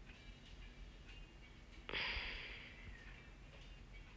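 Faint light clicks of a metal fork against a metal spoon while tomato paste is worked off the spoon. About two seconds in comes a sudden short hiss that fades over about a second.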